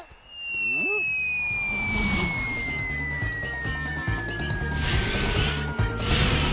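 A cartoon whistle sound effect that falls slowly and steadily in pitch through the whole stretch, over background music with a steady low beat.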